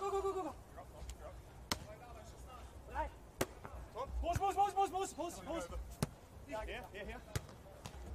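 Volleyball being struck by hand during a beach volleyball rally: single sharp hits every second or two. Between the hits, voices shout short, drawn-out calls.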